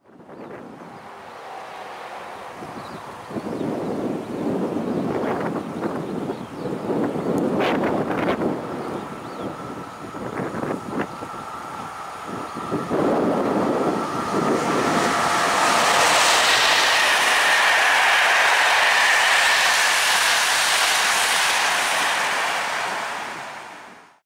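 PKP Intercity EP09 electric locomotive and its passenger coaches approaching at speed and passing close by. The train is loudest from just past the midway point and dies away near the end, with wind gusting on the microphone before it arrives.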